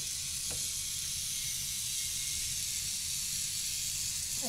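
Small electric motor and gears of a K'nex toy car running steadily as it drives, a hissy whir.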